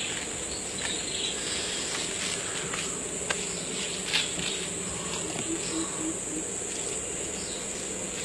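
Insect chorus: a steady, high-pitched buzz throughout, with a few scattered clicks and, between about five and six and a half seconds in, four short low notes.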